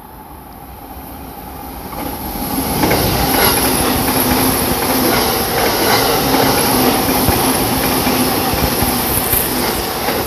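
JR East Tokaido Line electric commuter train passing through the station without stopping. Its rumble builds over the first three seconds, then holds loud and steady as the cars roll by, with repeated wheel clacks over rail joints and a high hiss.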